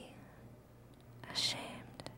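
A voice whispering a short phrase about a second in, over a faint steady hum.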